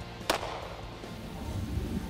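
A single sharp gunshot crack about a third of a second in, over faint background music.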